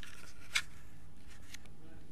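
Room tone of a home video recording: a steady low hum with a few short clicks, the sharpest about half a second in.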